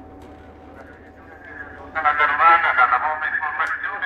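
Voices of a crowd at a bicycle race start: low chatter for the first two seconds, then louder, overlapping talking from about two seconds in.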